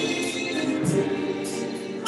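Church choir singing a gospel hymn with a drum kit, its cymbals marking a steady beat about twice a second.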